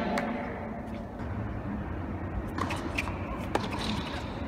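Ambience of a large indoor tennis hall between points: a steady low hum with a few short, sharp taps in the second half.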